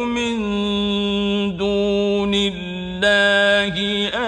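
A man reciting the Quran in Arabic, melodic and drawn out, holding long, steady notes with a few short breaks between phrases.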